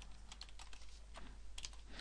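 Computer keyboard typing: a faint, irregular run of quick key clicks.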